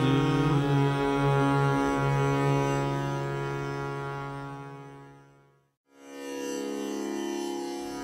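The last sung note of a Hindustani classical vocal piece ends just after the start, leaving a sustained instrumental drone that fades out to silence about five and a half seconds in. A new drone on a different pitch set begins about a second later, the opening of the next raga.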